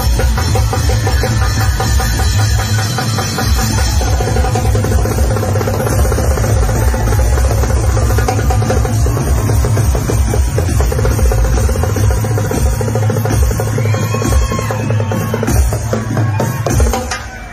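Live cumbia band playing an instrumental passage with no singing, carried by heavy bass and busy drums and percussion.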